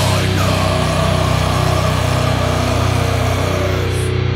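Heavy metal band track ending: a distorted electric guitar chord is struck with a cymbal crash and left ringing, with no drumbeat after it. The cymbal wash fades out near the end while the chord keeps sustaining.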